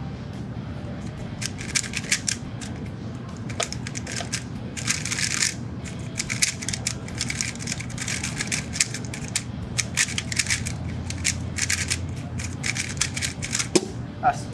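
A MoYu HuaMeng YS3M MagLev 3x3 speedcube being turned fast through a timed solve: rapid runs of plastic clicking from the layer turns, with short pauses between them, starting about a second and a half in. Near the end the hands come down to stop the timer.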